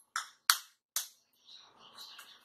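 A kitchen knife blade tapping a raw egg's shell to crack it: three sharp clicks about half a second apart, the second loudest. A fainter, ragged crackle follows near the end.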